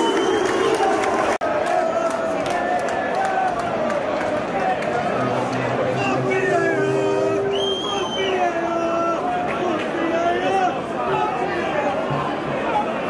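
Football crowd: many voices talking and calling out over one another, with a brief break in the sound about a second and a half in.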